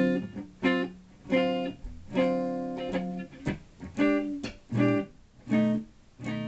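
Les Paul electric guitar playing blues: chords picked in a steady rhythm, each ringing briefly and dying away before the next.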